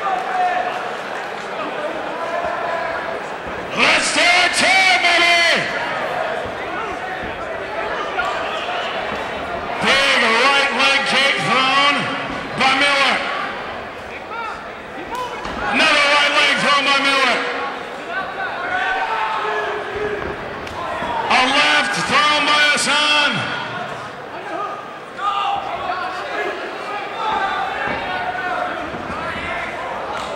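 A man's voice, loud and echoing as in a large hall, in four long drawn-out phrases about six seconds apart, with quieter talk between them.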